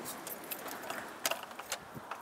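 Scattered light clicks and rustles of handling noise on a phone's microphone, a few sharp ticks about half a second, a second and a quarter, and a second and three-quarters in, over a faint hiss.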